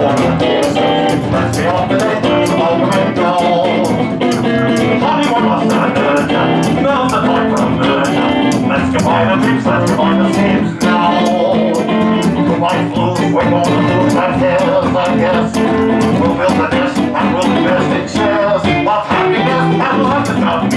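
Live music: acoustic guitar with a melody voiced through a hand-held cone-shaped horn, over a steady ticking shaker-like rhythm at about four beats a second.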